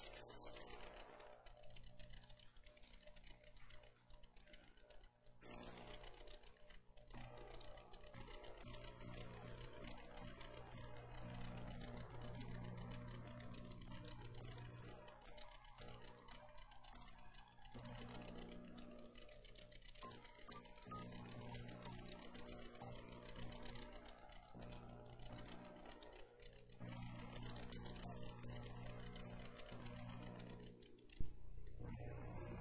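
Soft keyboard music played quietly, slow held chords that change every few seconds.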